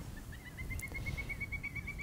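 A bird calling a quick string of short, clear notes, about eight a second, that rise a little in pitch at first and then hold steady, over faint outdoor background noise.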